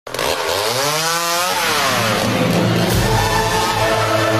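Chainsaw engine revving: its pitch climbs and then drops back over the first two seconds, and then it runs on steadily.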